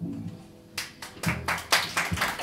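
The band's final chord dies away with a last low note. Scattered audience clapping starts about three-quarters of a second in and quickly grows louder and thicker.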